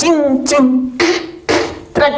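A woman imitating a dance beat with her voice: short rhythmic vocal syllables with sharp attacks, about two a second.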